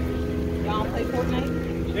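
A motor vehicle's engine idling steadily with a low, even hum, with a few faint voices over it.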